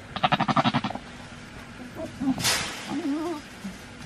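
A Nigerian Dwarf goat's bleat, one rapid fluttering call lasting under a second.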